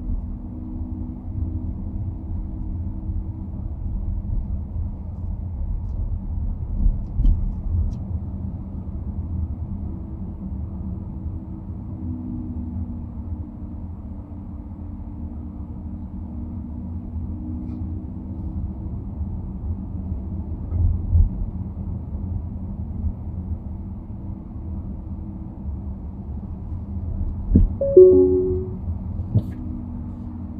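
Low, steady road and engine rumble heard from inside a car moving in slow city traffic. A short pitched tone stands out about two seconds before the end.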